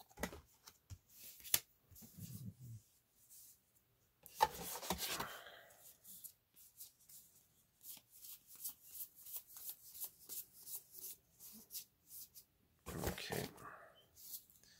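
Magic: The Gathering trading cards being handled: a run of quick light clicks, about four a second, as cards are flicked through, with a brief rustling sweep about four seconds in and again near the end.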